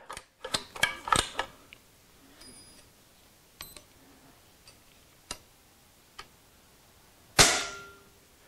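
Small metallic clicks from an EDgun PCP air rifle's action and trigger as it is cocked and its trigger screw is adjusted, a few clicks in quick succession at first and then scattered single ticks. About seven seconds in, the trigger breaks under a pull gauge with one sharp, loud release and a brief ring. The trigger is set very light, letting off at about 270 grams.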